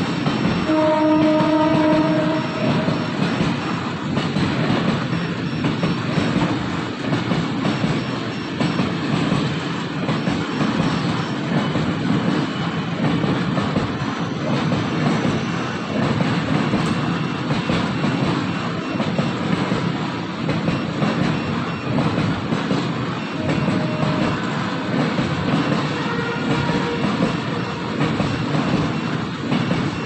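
Freight train of flatcars loaded with long steel rails rolling past, a steady rumble with wheel clatter. A steady horn sounds about a second in, for about two seconds.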